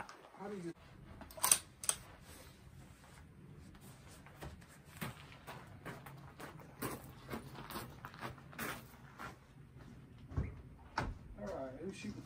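Scattered light clicks and knocks of rifle and shooting gear being handled, and footsteps on gravel, with a sharper knock about a second and a half in and a few brief low voices.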